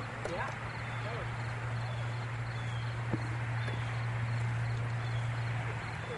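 Open-air background noise under a steady low hum, with faint distant talk near the start and a single small click about three seconds in.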